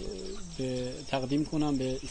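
A man's voice talking, in words not caught in the transcript, over a steady, high, pulsing chirp of insects.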